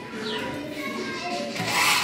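Scissors cutting the stiff stems off artificial flowers, with a louder rustling, crunching cut near the end.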